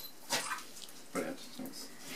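A dog barking twice: a sharp bark about a third of a second in and a lower one just after a second in. The dog is a greyhound-Doberman cross.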